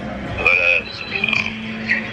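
Wordless vocal sounds from a person: a short voiced sound, then one held sound at a level pitch.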